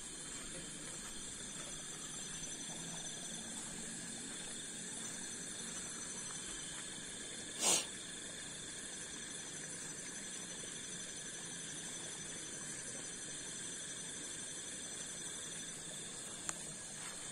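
Night insect chorus: a steady high-pitched drone of several overlapping tones, as from crickets. One short, louder burst of noise cuts across it about eight seconds in.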